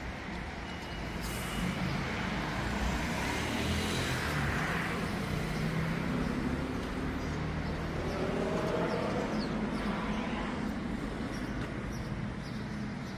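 Motor vehicle engines running amid road traffic noise, growing louder over the first couple of seconds. The engine tones rise and fall in pitch.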